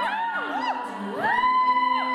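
Female a cappella group singing: a high voice makes quick up-and-down slides, then glides up into a long held high note, over lower voices holding steady notes.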